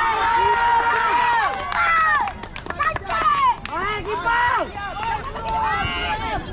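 Several voices shouting and calling out over one another, with long drawn-out calls in the first two seconds, from young spectators and players on the touchline. A run of sharp clicks sounds around the middle.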